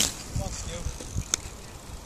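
Wind buffeting an outdoor microphone, with faint voices in the distance and a single sharp click a little past halfway.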